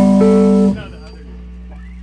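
A guitar chord rings out and is cut off sharply under a second in, leaving a low steady hum.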